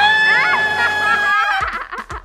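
A young man's long, high-pitched scream of shock, held on one pitch for about a second and a half while a second man laughs over it, then breaking off into laughter.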